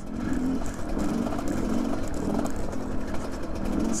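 GPX Moto TSE250R's single-cylinder engine running steadily as the bike is ridden, its note wavering slightly with the throttle. It breathes through a FISCH Kit 20 spark arrestor in the exhaust, which the rider suspects is somewhat restrictive.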